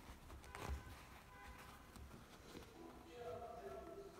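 Very quiet handling of cotton fabric pieces being lined up by hand, with one small tap about two-thirds of a second in. A faint voice sounds in the background near the end.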